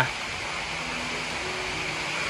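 Steady, even rushing hiss like running or bubbling water, with a faint low hum under it and no distinct events.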